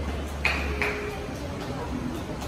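Two short, bright pings about a third of a second apart.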